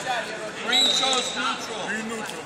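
Voices of coaches and spectators shouting and talking in a large, echoing gymnasium. A short, steady high tone sounds about a second in.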